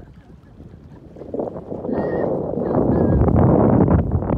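Wind blowing across a phone's microphone, rising about a second in and growing loud toward the end, over choppy lake water.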